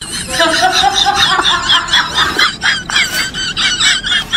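High-pitched snickering laughter: a rapid run of short giggles repeated several times a second, with a short rising squeal near the start.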